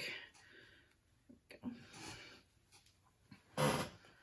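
Soft handling sounds of a card of embroidery floss skeins being moved and held up: a brief swish at the start, a few faint light ticks and a soft breath-like rustle. A short voiced phrase comes near the end.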